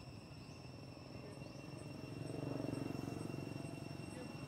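Steady high-pitched insect drone, with a low rumble that swells about two seconds in.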